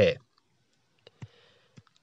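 A spoken word ends, then a quiet pause broken by a few faint, sharp clicks: two about a second in and one near the end.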